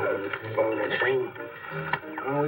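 Indistinct speech with steady low musical tones underneath.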